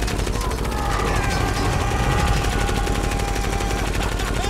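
Rapid, continuous movie gunfire, a dense unbroken stream of shots, with a steady held tone running over it.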